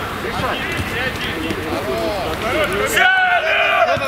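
Several people shouting and calling out on a football pitch, their voices overlapping, with one loud, high-pitched shout about three seconds in.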